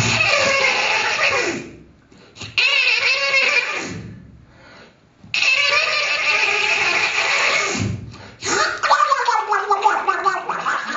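Extended-technique vocal improvisation into a microphone: gargled, throaty voice noises shaped with the hands at the mouth, in four loud bursts with short pauses between them.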